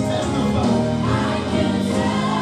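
Gospel music with choir singing, playing steadily.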